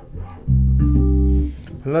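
Ibanez SRMD200 medium-scale electric bass, played on its front (neck) pickup, sounding one low held note, full and warm, for about a second before it is cut off. A man starts talking near the end.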